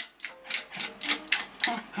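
Bongo drums tapped by a Lakeland Terrier with its paw, in a quick, irregular run of sharp hits, several a second. A person laughs near the end.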